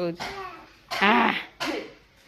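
Speech: a few short words from a woman's voice, separated by brief pauses.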